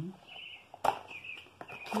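Small birds chirping in the background in short repeated calls, with one sharp click just under a second in, from the perfume box being handled.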